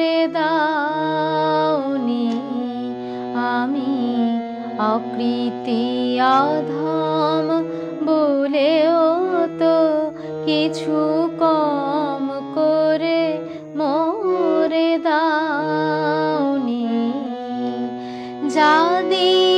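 A woman singing a Bengali devotional song solo, her voice gliding and ornamenting between notes, over steady held accompaniment notes that shift in pitch every few seconds.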